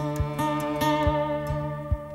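Slow acoustic folk instrumental: a violin holding wavering notes over two acoustic guitars, one of them a harp guitar, with a low thump every half second or so.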